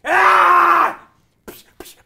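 A loud, drawn-out cry of mock pain from a man's voice, held just under a second, acting out the pain of getting a tattoo. Two short sharp clicks follow near the end.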